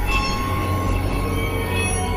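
Title-sequence music and sound design: several steady high tones held over a deep low rumble, with a metallic, squealing character.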